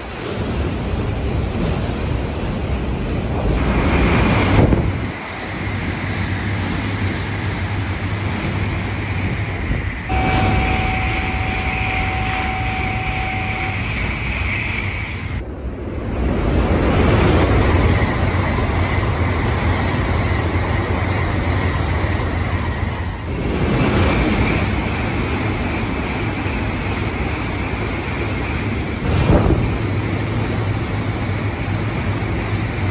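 Shinkansen bullet trains passing at high speed: a loud rush of air and wheel-on-rail noise that swells as each train goes by. There are two main passes, one in the first few seconds and a longer one from about sixteen seconds in, with a brief high steady tone about ten seconds in.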